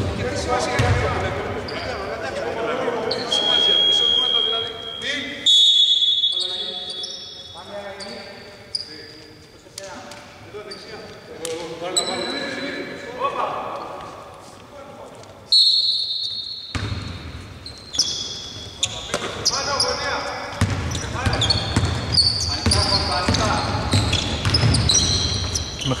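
Basketball bouncing on a hardwood court in a large, mostly empty hall, with players' voices. Two sudden high steady tones cut in, about five and fifteen seconds in.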